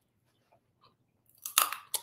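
Mouth sounds and faint small clicks, then about one and a half seconds in a loud crunch as crisp food is bitten into and chewed close to the microphone.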